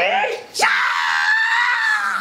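Young boy roaring like a T-Rex: a short yell rising in pitch, then, about half a second in, one long high-pitched scream.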